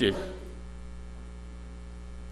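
Steady low electrical mains hum, with the tail of a man's voice fading in the room's echo just at the start.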